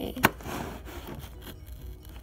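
Scissors cutting and scraping at the sealed top edge of a cardboard box: a sharp snap about a quarter second in, then a short rasping scrape.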